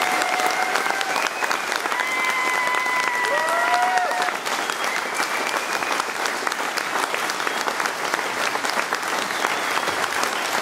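Concert audience applauding at the end of a song, the clapping dense and steady, with a few cheers and whoops over it in the first four seconds.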